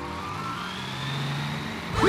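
Bus driving along: a steady engine and road noise under held background music notes.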